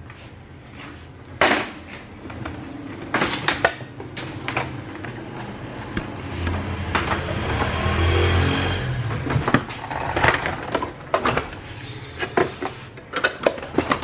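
Scattered clicks and knocks of plastic parts being handled as a Mitsubishi stand fan's control-panel housing is taken apart, with a longer rustling, rumbling stretch in the middle.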